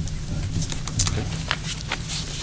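Sheets of paper being handled at a table: several short, crisp rustles and taps over a steady low room hum.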